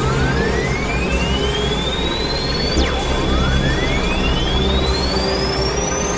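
Layered experimental electronic music. A pure tone glides slowly upward, drops sharply about halfway through and starts climbing again, over a dense low rumbling layer and a steady high tone.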